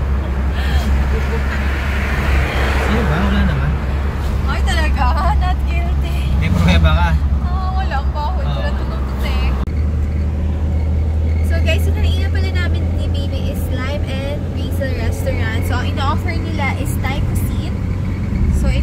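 Steady low rumble of a car's engine and tyres heard from inside the cabin while driving, with voices over it. The background changes abruptly about halfway through.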